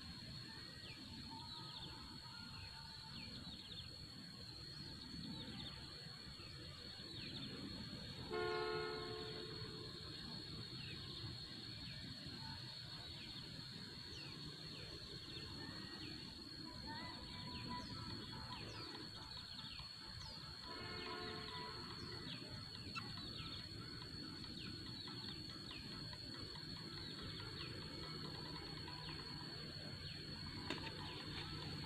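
Faint outdoor ambience: a steady high-pitched insect drone with many short falling bird chirps. Two brief horn-like toots come through, one about eight seconds in and one about twenty-one seconds in.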